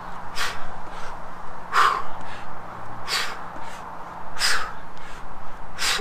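Short, sharp exhales of breath, one with each squat side kick, about every second and a half: five in a row.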